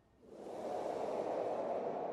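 A soft whoosh sound effect: a swell of noise that rises about a quarter second in and holds steady, marking a transition as the scene fades to white.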